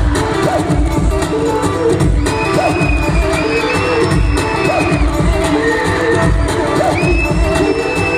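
Loud amplified live music with a steady beat, heard from within an arena audience, with the crowd cheering over it. Two long high held tones ride above the music, one about two seconds in and one near the end.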